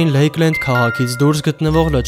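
A person's voice over background music with a few held, bell-like notes.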